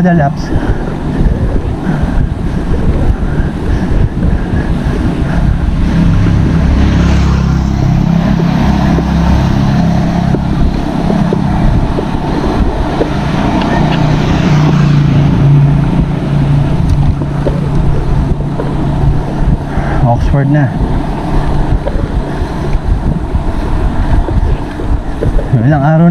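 Wind buffeting a handlebar-mounted action camera's microphone while riding a bicycle. A motor vehicle's engine hum comes and goes twice, about a quarter of the way in and again past halfway.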